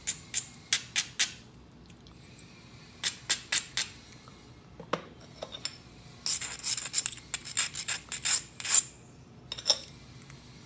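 A coarse abrading stone scraped along the edge of a knapped stone preform in short, quick rasping strokes, coming in bursts with the longest run in the second half. This is edge abrading, which readies the edge for the next strike.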